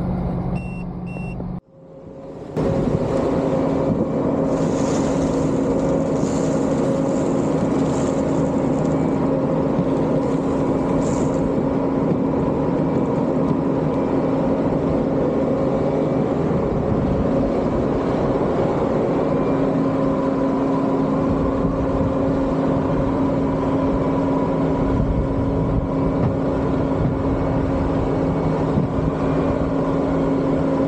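Vehicle engine running steadily with a constant hum, after a brief dropout about two seconds in.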